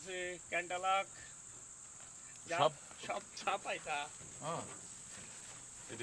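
Insects keeping up a steady high-pitched drone in the background.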